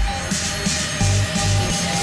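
Electronic dance music with bass notes and a hissing swell high above them.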